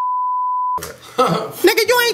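A steady, pure test-tone beep of the kind played with TV colour bars, lasting just under a second and cutting off abruptly, followed by people talking.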